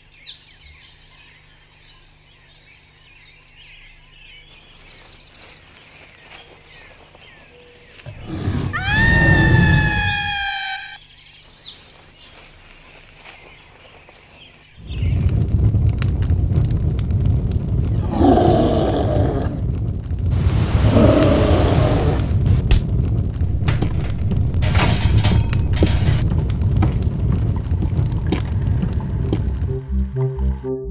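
Cartoon sound-effect track: faint ambience, then a long high cry about eight seconds in that rises in pitch and is held for a couple of seconds. From about fifteen seconds a loud, continuous rumbling noise with crackles runs on, with a couple of groan-like sounds in it.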